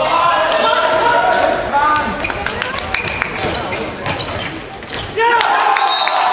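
Handball bouncing on the wooden floor of a sports hall as it is dribbled and passed, amid players' shouts echoing in the hall. The voices get louder again about five seconds in.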